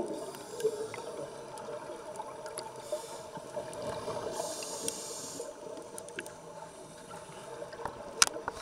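A scuba diver breathing through a regulator underwater. A soft hiss of an inhaled breath lasts about a second midway, over a steady underwater background with a few faint clicks.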